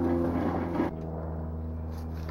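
A steady engine drone with an even, unchanging pitch, which drops in level about a second in and carries on more quietly.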